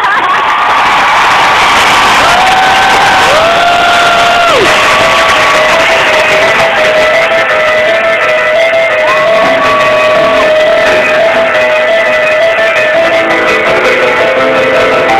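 Live rock band playing in an arena, heard loud through a cell phone's microphone, with the crowd cheering over it. Several long held notes slide in and out in the first few seconds, then one note holds steady.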